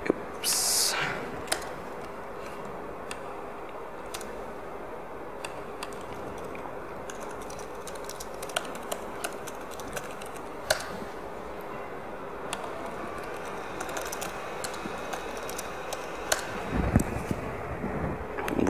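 Laptop keyboard typing: scattered key clicks over steady room noise, with a short hiss about a second in and a low thump near the end.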